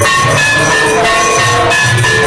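Temple aarti music played loud and continuously: ringing metal bells and cymbals over a steady drum beat of about two strokes a second.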